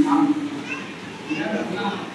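An elderly man giving a sermon in Thai into a microphone. It opens with a loud, long drawn-out vowel.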